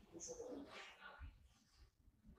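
Near silence: room tone, with a few faint soft sounds in the first second.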